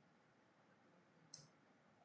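Near silence, with one faint, sharp click just over a second in: a steel-tip dart landing in a Unicorn Eclipse Pro 2 bristle dartboard.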